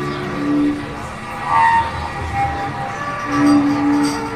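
Cello bowed in long held notes, several overlapping at once, with a low note swelling loudest near the end.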